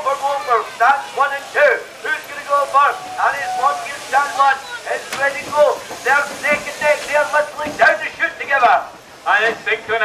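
A man's voice commentating rapidly and continuously, over the steady whirr of electric sheep-shearing handpieces running.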